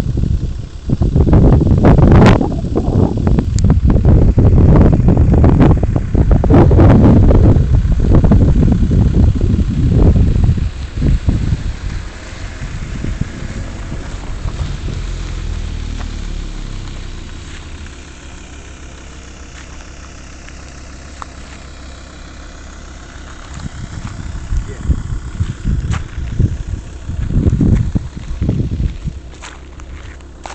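Wind buffeting the microphone in loud, uneven gusts that die down about halfway through and pick up again near the end. A faint low hum sits under the quieter middle stretch.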